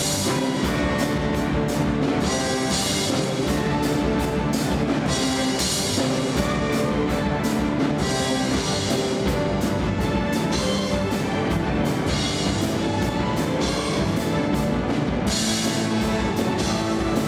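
A student rock orchestra playing live: many bowed cellos and other strings over a rock drum kit, with cymbal crashes every few seconds.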